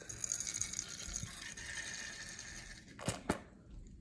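Contact lens solution squirted from a squeeze bottle into a small plastic shot glass: a steady stream for about three seconds, then two sharp clicks.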